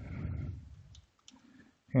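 A few faint computer keyboard keystrokes, with a soft noise fading out over the first half second.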